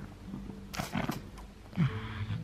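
Pug growling in short bursts during a tug-of-war game with a plush toy, about a second in and again near the end.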